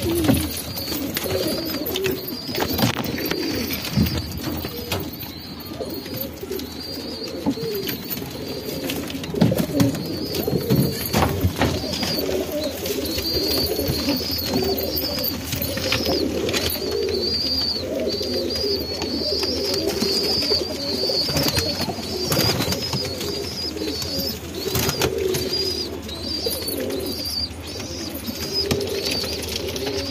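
A loft full of domestic pigeons cooing continuously in overlapping low calls, with a thin high chirping repeating over them and occasional short knocks.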